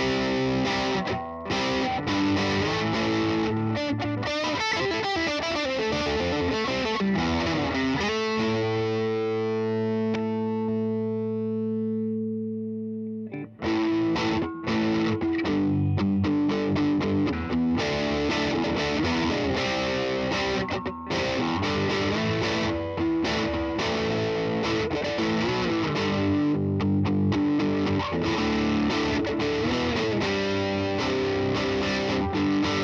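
2002 Gibson SG Special Faded electric guitar played through an amplifier: busy rock riffing, with a chord struck about eight seconds in and left to ring for about five seconds before it is cut off and the riffing starts again.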